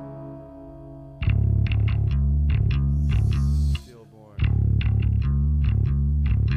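Recorded 1990s hardcore/metal band. A held guitar chord rings out, then about a second in the full band comes in loud with a stop-start chugging riff of guitar, bass and drums. The riff breaks off abruptly just past the middle for about half a second, then comes back in.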